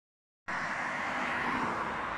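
Steady road traffic noise, beginning abruptly about half a second in.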